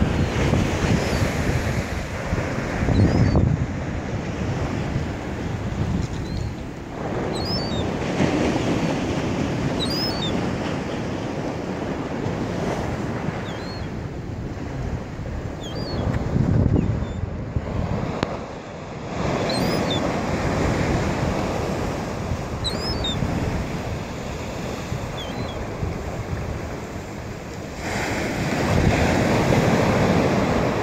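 Ocean surf breaking and washing up the beach, swelling and easing every few seconds, with wind buffeting the microphone.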